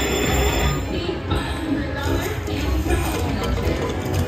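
Huff n' More Puff slot machine playing its free-games music and chiming sound effects as hard-hat symbols land on the reels, over a steady casino-floor din. A held chime rings out through the first second.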